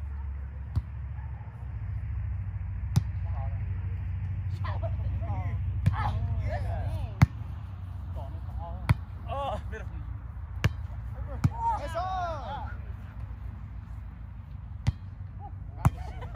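Volleyball being struck during a rally: a string of about nine sharp slaps of hands and forearms on the ball, the loudest about seven seconds in, with players calling out in between.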